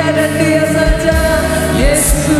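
Slow worship song: a woman singing into a handheld microphone over sustained chords and a steady bass, with a few low drum beats about a second in.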